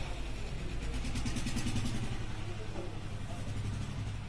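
A motor vehicle's engine running, growing louder through the middle and easing off near the end.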